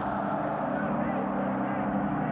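A steady, even low drone with no breaks or sudden sounds.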